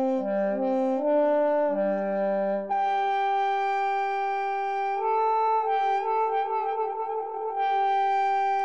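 Virtual French horn from Xtant Audio's Model Brass library playing a phrase: a few short notes, then longer held notes from about three seconds in, with a change of pitch about two seconds later.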